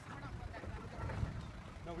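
Low rumble of a vehicle engine, strongest about a second in, with faint voices talking over it.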